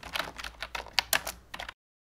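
Computer keyboard typing: a rapid run of clicks over a low hum that cuts off abruptly a little before the end.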